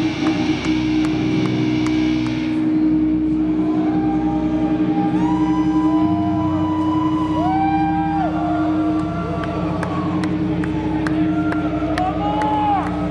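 Electric guitar amplifiers left droning with feedback after the song ends: a steady low hum, with high wavering tones that slide up, hold and fall away in the middle.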